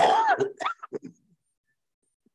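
A man clearing his throat: one loud rasp of about half a second, followed by a few short, fainter ones.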